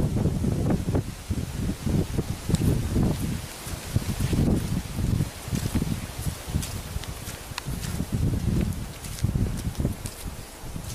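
Footsteps of people walking along a dry grassy forest track, with rustling of grass and a low, uneven rumble of wind on the camera's microphone.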